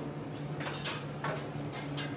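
Things being handled on a kitchen counter: a few short rustles and knocks near the middle, over a steady low electrical hum.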